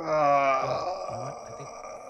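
A man's drawn-out cringing groan, "uhh", loudest at the start and trailing off over about a second and a half.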